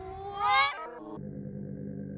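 A child's voice squealing, rising steeply in pitch and breaking off about a second in. After it comes a low, steady, drawn-out drone of slowed-down slow-motion audio.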